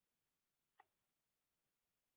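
Near silence, broken once by a brief faint sound just under a second in.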